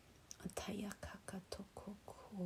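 A woman speaking softly, close to a whisper, in a quick run of short syllables.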